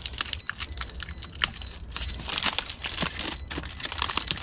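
Close rustling and crackling: a dense run of irregular small clicks with a low rumble underneath, the handling noise of a moving camera and its microphone.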